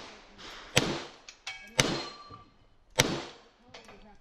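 Three pistol shots from a Grand Power X-Caliber, about a second apart, with a brief metallic ringing after the second shot, as of a hit steel target.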